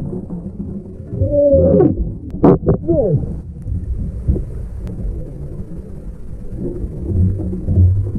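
Muffled underwater sound from a camera held under water: a steady low rumble and churn of water, with a few short wavering pitched sounds between about one and three seconds in.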